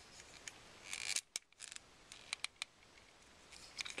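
Plastic parts of a Transformers Voyager Battle Blades Optimus Prime action figure being handled and pressed into place: a short rustle about a second in, then a few sharp clicks.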